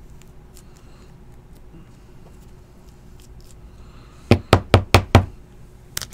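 Five sharp knocks in quick succession, about five a second, a little past four seconds in: something tapped against the tabletop while trading cards are handled. Before them there are only faint handling clicks over a low steady hum.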